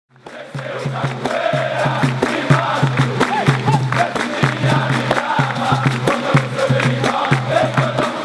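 Capoeira roda music: a crowd singing in chorus and clapping in rhythm over a berimbau. It fades in just after the start.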